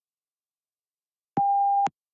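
A single short electronic beep, one steady tone about half a second long, about one and a half seconds in: the PTE test software's cue that answer recording starts.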